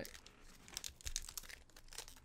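Foil wrapper of a Pokémon booster pack crinkling and crackling in irregular little snaps as it is handled and opened.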